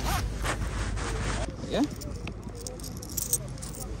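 Clothing and fabric tote bags rustling and scraping right against a chest-mounted phone's microphone, with people talking in the background.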